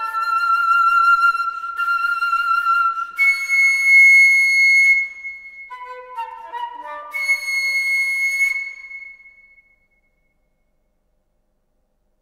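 Music on a flute-like wind instrument: quick runs of notes, then long, high, shrill held notes, twice over, until it dies away about ten seconds in.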